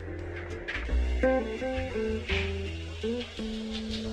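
Background lo-fi music: plucked guitar notes over a bass line, with a light beat.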